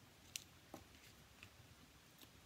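Near silence, with a few faint short taps of cardstock being handled, the clearest about a third of a second in.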